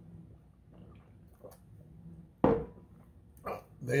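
A man gulping beer from a glass bottle, quiet swallowing sounds, followed by a sudden loud exhale about two and a half seconds in.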